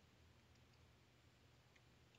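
Near silence: room tone with a low hum and a few faint clicks.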